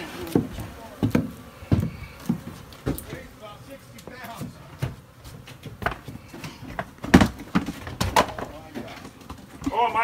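Irregular knocks and thumps on a wooden plywood floor during work at a cut-open floor cavity, the loudest about seven seconds in.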